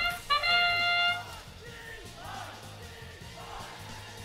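The arena's match-start sound signal: its last long, brass-like note is held for about a second as the autonomous period begins. It gives way to a steady low background of the crowded arena.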